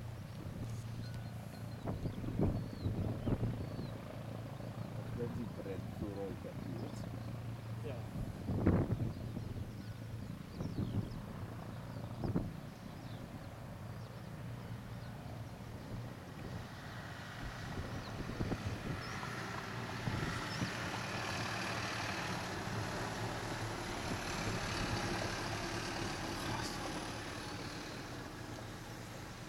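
Boeing E-3 Sentry jet engines growing louder from about halfway as the aircraft comes in on a low approach with one engine at idle, a rising jet rumble with a high whine over it. Before that there are gusts and scattered thumps over a low hum.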